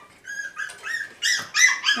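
West Highland white terrier puppy whining in a quick run of short, high-pitched yelps, about eight in under two seconds, getting louder toward the end, as it protests being held still.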